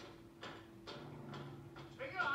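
A squad of soldiers marching in step, boots striking the ground together about twice a second in an even rhythm, with a steady hum of an old film soundtrack beneath.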